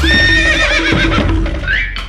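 A horse whinnying: one long neigh that starts abruptly and wavers up and down in pitch toward its end, over background music.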